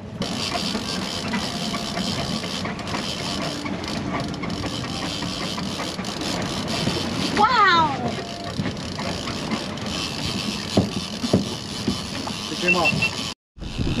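Steady rush of wind and sea around an offshore fishing boat, with a short falling vocal exclamation about halfway through and a couple of light knocks near the end.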